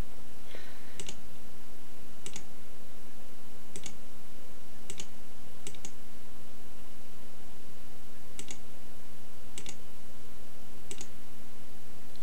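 Computer mouse button clicking: about nine single clicks spaced roughly a second apart, over a steady low hum.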